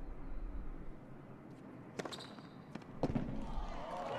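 Tennis ball being struck and bouncing during a rally on a hard court: a sharp pop about two seconds in, then two more close together near three seconds, over faint stadium background.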